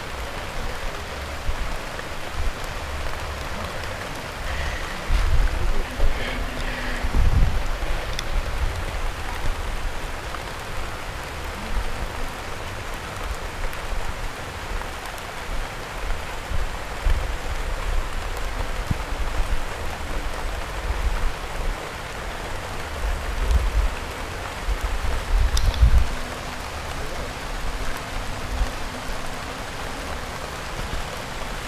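Steady rushing noise, with irregular low rumbles that come and go, strongest a few seconds in and again near the end.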